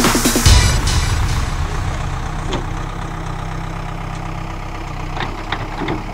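Backhoe loader's diesel engine running steadily. The tail of an electronic dance track dies away in the first half-second.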